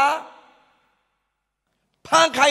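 The tail of a man's loud, drawn-out exclamation, fading out within the first half second, followed by a pause with almost no sound.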